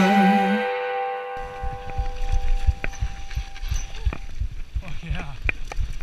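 The last sung note and chord of a rock song ending in the first second or so, then mountain-bike trail riding: wind buffeting the helmet-camera microphone and irregular clicks and rattles of the bike over a dirt singletrack.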